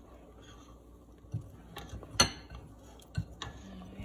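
A spoon stirring soup in a stainless steel stockpot, knocking against the pot several times; the loudest knock, about halfway through, rings briefly.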